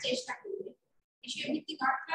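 A woman's voice speaking, breaking off a little under a second in and resuming about half a second later.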